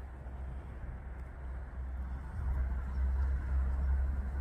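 Steady low outdoor rumble with a faint hiss above it, growing louder a little past halfway.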